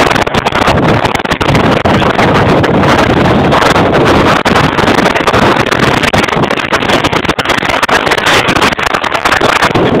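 Strong wind of about 50 miles an hour buffeting the microphone: a loud, continuous rush with a heavy low rumble.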